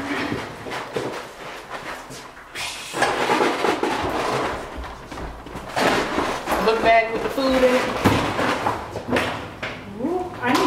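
Footsteps going down a stairwell, with bag and clothing rustling against the microphone. A brief indistinct voice comes in about seven seconds in.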